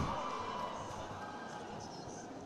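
Faint, steady stadium background noise. At the start, the commentator's voice echoes away through the large space.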